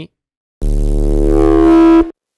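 Heavily distorted drum and bass synth bass note from Serum, held for about a second and a half and cut off sharply. It starts about half a second in and grows slightly louder. An EQ bell boost near 420 Hz makes one tone around 400 Hz stand out.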